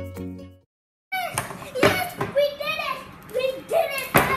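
Background music with steady notes fades out in the first half-second, then cuts to a moment of silence. From about a second in a child's voice calls out in short, gliding exclamations, with a few sharp knocks of handling noise.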